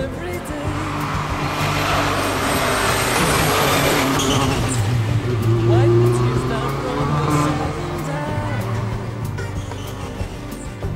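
Rally car engine approaching at speed and passing close by. It builds over a few seconds, is loudest about five to six seconds in, then fades as the car goes away.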